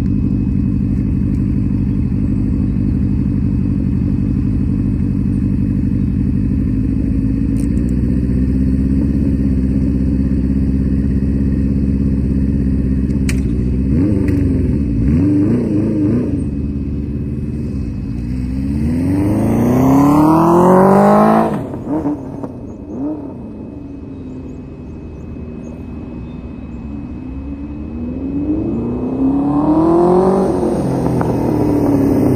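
1977 Honda CB400 Four's air-cooled inline-four engine idling steadily, then blipped a few times before accelerating hard through the gears in long rising sweeps that peak about twenty seconds in. The engine note then drops away sharply to a quieter, distant run and swells again near the end as the bike comes back.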